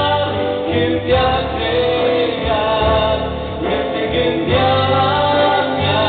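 A woman and a man singing a Christian song together as a duet into handheld microphones, amplified through a sound system.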